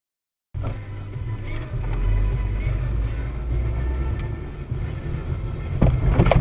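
Car cabin sound picked up by a dashcam: a steady low engine and road rumble with music playing faintly, starting about half a second in. Just before the end comes a sudden thump, the moment a city bus strikes the car.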